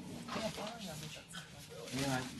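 Indistinct conversation: people talking quietly in a room, the words too faint to make out.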